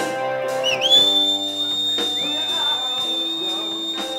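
Live rock band playing, with a thin, high whistling tone that settles about a second in and holds steady over the music for about three seconds.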